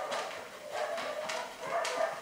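Soft sounds from a dog close by, with two light clicks in the second half.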